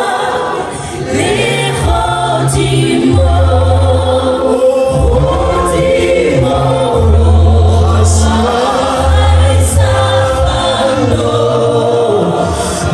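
A small worship team of male and female singers singing a gospel song together in harmony into microphones, amplified through a PA. Low held bass notes sound underneath the voices.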